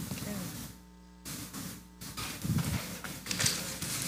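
Indistinct murmur of people talking quietly among themselves in a large room, with no single clear voice.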